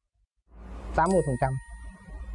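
An editing sound effect: a short rising whoosh, then a bright ding that rings on as a steady chime while a man speaks over it.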